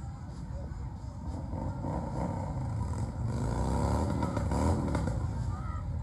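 Vehicle engine revving, climbing in pitch from about three seconds in and loudest near five seconds before easing off, over a steady low rumble.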